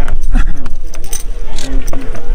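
People talking close by, with scattered light metallic jingling mixed in.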